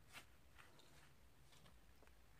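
Near silence, with one faint, brief rustle shortly after the start as fingers handle the braided knotting cord.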